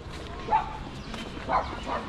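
A dog barking: two short barks about a second apart.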